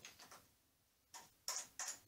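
A few light clicks of a camera's dovetail plate being seated and clamped into a telescope mount's dovetail bracket, three in a little under a second.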